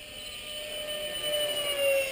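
The 64 mm electric ducted fan of an RC F-18 jet whining in flight. It grows louder, and its pitch drops slightly near the end as the jet passes.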